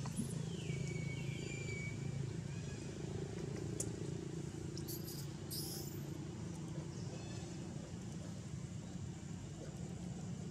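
Baby macaque's high, thin distress calls: a falling whimper in the first two seconds and short shrill squeals about five seconds in, as the mother holds it back from walking. Under it runs a steady low rumble.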